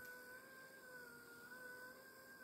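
Near silence with the faint, steady whine of a shiatsu massage pillow's small electric motor turning its rollers, wavering slightly in pitch.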